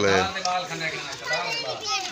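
Children chattering and calling out together as they play, with a man's voice saying one word at the start.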